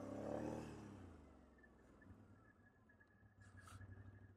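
Can-Am Outlander 850 ATV's V-twin engine note falling as the quad slows to a stop in the first second, then settling to a very quiet low idle.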